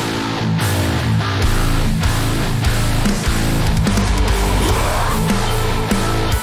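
Heavy metal song playing back from a multitrack mixing session: distorted electric guitars, bass and drums together in a dense, loud mix, running through a linear-phase multiband compressor on the master bus.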